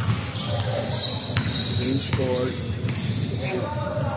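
A basketball being dribbled on a court floor, a few sharp bounces at uneven intervals.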